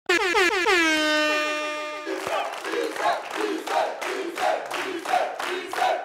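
A DJ air-horn sound effect sounds suddenly, its pitch sliding down in the first half-second and then holding steady for about two seconds. It is followed by music with a quick, regular beat.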